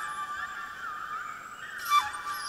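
Solo flute playing: a held high note with several overlapping glides sliding up and down in pitch above it.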